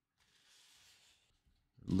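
Faint rustle of a comic book's paper cover being handled and pressed flat, lasting under a second.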